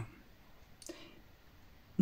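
Quiet room tone with one short, faint click a little under a second in.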